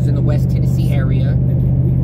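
Steady low drone of a vehicle driving at highway speed, heard from inside the cabin, with a man talking over it.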